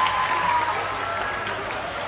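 Audience applauding, with a voice calling out over it at the start; the clapping slowly dies down.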